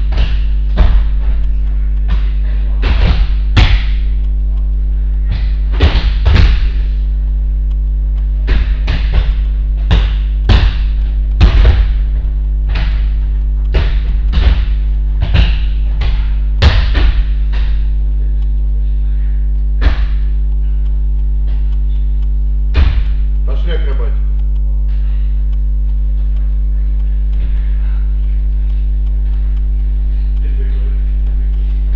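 Repeated thuds and slaps of bodies and arms hitting judo mats as the rolls and breakfalls come in quick succession, thinning to two single thuds after about 17 seconds. A steady low electrical hum runs underneath.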